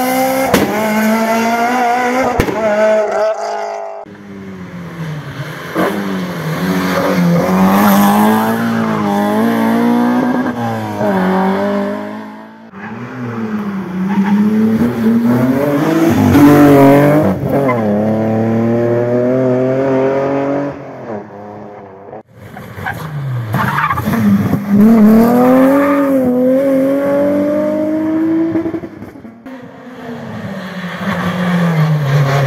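Rally cars driven hard one after another, their engines revving high with pitch climbing through each gear and dropping sharply on upshifts and braking. The sound cuts abruptly from one car's pass to the next three times.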